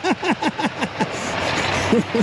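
A man laughing in a quick run of short, falling "ha"s for about a second, over the steady running of pickup trucks with snowplows mounted. The engine noise grows louder through the second half.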